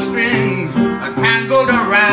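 Upright piano playing a song accompaniment, with a man's voice singing over it.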